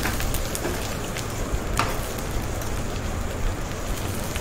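Duck meat frying in hot oil in a pan, a steady sizzle with scattered pops and one sharper click a little under two seconds in.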